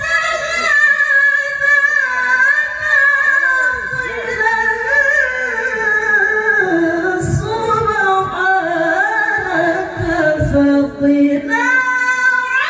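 A woman's melodic Qur'an recitation (tilawah), one long ornamented phrase. It starts high, sinks gradually to a low held note near the end, then leaps back up high.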